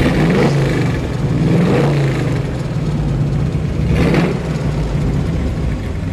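Ford 351 Windsor V8 in a custom 1946 Chevy pickup, running loud and revving in several swells, the strongest about four seconds in.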